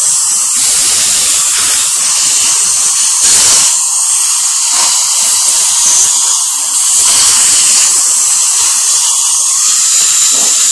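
Dental drill and high-volume suction tube running in a patient's mouth: a loud, steady high-pitched hiss.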